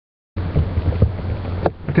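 Steady low rumble with a few soft knocks, starting about a third of a second in, picked up by a webcam microphone; a voice says "Okay" at the end.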